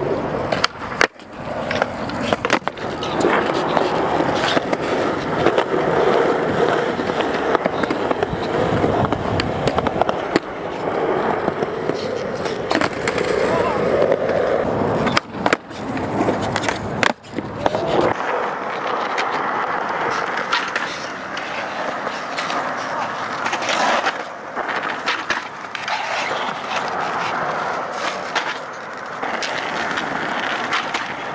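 Skateboard wheels rolling on concrete, with several sharp knocks of the board popping and landing during tricks. The rolling noise is heavier through the first part and lighter after a change of clip partway through.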